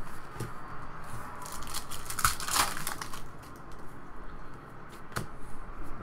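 Stiff chrome-finish trading cards being flipped through by hand, a run of light rustles, scrapes and clicks as the cards slide off one another, busiest a couple of seconds in.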